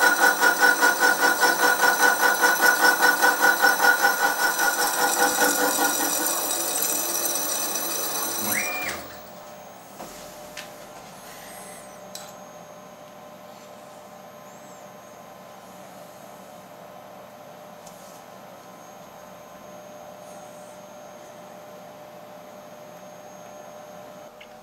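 Slitting saw on a milling machine cutting through a small carbon-steel part, a ringing machining sound pulsing about three times a second that fades and then stops abruptly about nine seconds in as the part is cut free. After that only a faint steady hum remains, with a couple of light clicks.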